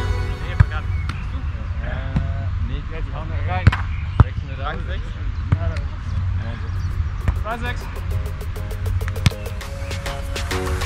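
Live sound from an outdoor sand volleyball court: people's voices calling and talking, over a steady low rumble, with a few sharp thumps of a ball being struck. The loudest thumps come about four seconds in, two in quick succession.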